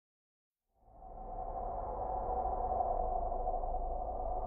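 Dead silence for under a second, then a steady low hum and hiss of recording background noise fades in and holds, with no speech or music in it.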